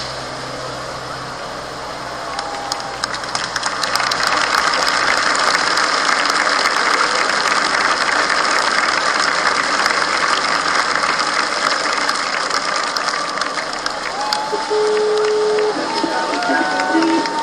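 Large crowd cheering and shouting, swelling about four seconds in and holding loud; a short steady tone sounds near the end.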